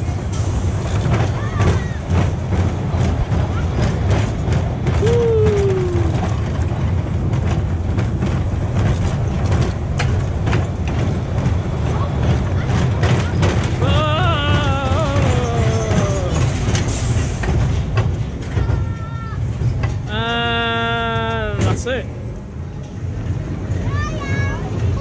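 Pinfari inverted family coaster train running its circuit, heard from on board: a steady low rumble of wheels and wind on the track, with rattles and clicks. Riders call out now and then, and a held tone sounds about twenty seconds in.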